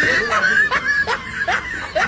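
A person laughing in short, high-pitched bursts, about two to three a second.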